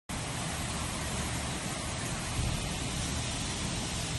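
Heavy thunderstorm downpour: a steady, dense hiss of rain with a deep rumble underneath.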